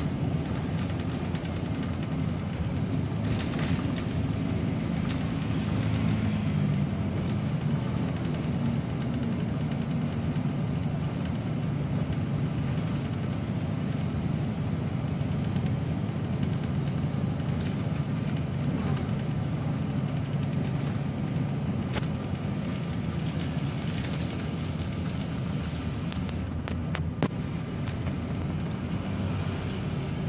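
Inside a city bus under way: a steady low engine drone and road rumble, with a few brief clicks through the ride.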